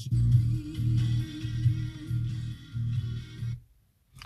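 FM radio music playing through the car's speakers, cutting off abruptly near the end as the head unit tunes to another station.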